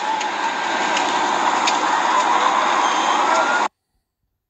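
Close-up phone recording of a house fire burning: a loud steady rushing noise with a few sharp crackles, cut off abruptly about three and a half seconds in.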